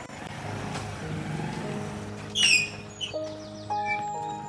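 Motorcycle engine running at low speed as the bike rides in, with a brief shrill descending chirp about halfway through and light background music.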